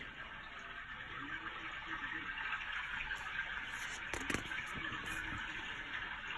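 Faint steady hiss of room background noise, with a brief paper rustle or click about four seconds in as a sticker-book sheet is turned.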